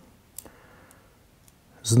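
Hard plastic model-kit parts clicking as fingers handle them and press them onto the chassis: one sharp click about half a second in, then a couple of fainter ticks.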